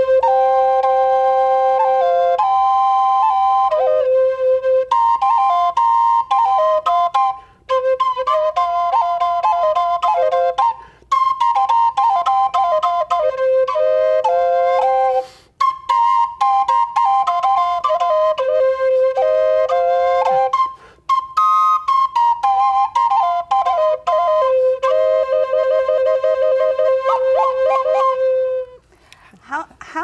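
Double-chamber Native American flute playing a slow melody over a held drone note, in phrases broken by short breath pauses. The playing stops about a second before the end.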